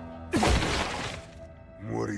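A loud crashing impact sound effect from an anime fight scene about a third of a second in, fading over about a second, over dramatic background music.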